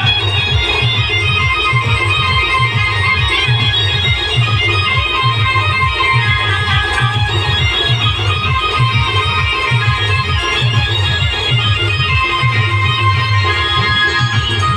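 Loud band music: a melody of quick, short notes over a steady, heavy drum beat.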